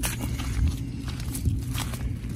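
Footsteps on a dry dirt path, a few soft scuffs over a low steady rumble.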